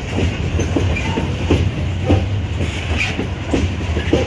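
Empty iron-ore wagons of a freight train rolling past: a steady low rumble, with wheels clacking over the rail joints about twice a second.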